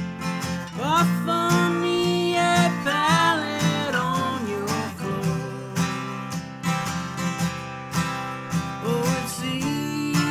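Acoustic guitar strummed steadily, with a voice singing a long, sliding phrase from about one to four seconds in and coming in again near the end.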